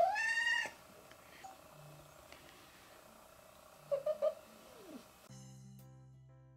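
Black-and-white cat meowing: one loud call under a second long that rises and falls in pitch, then a few short soft chirps and a brief falling mew around four seconds in.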